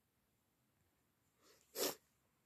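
Near silence, then near the end a faint breath followed by a single short, sharp sneeze from a young woman.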